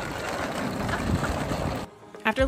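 Wind buffeting the microphone mixed with the rumble of rolling suitcase wheels on pavement, a steady noise that cuts off suddenly near the end.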